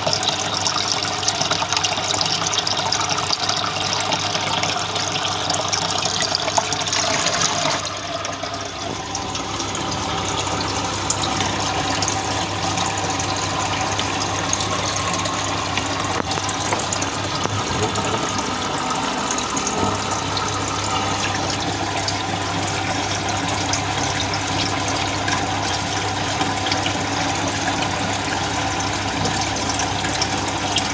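Aquarium pump and aeration running: steady splashing, bubbling water over a low, even motor hum. About eight seconds in, the water sound turns duller and slightly quieter, then carries on steadily.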